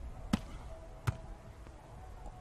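Two sharp hand strikes on a beach volleyball, about three-quarters of a second apart: a jump serve being hit, then the receiving pass.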